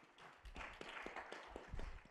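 Faint, scattered hand claps, a quick irregular run of light claps, with a couple of low bumps mixed in.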